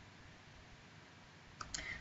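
Near silence: faint room tone, broken near the end by two short faint clicks.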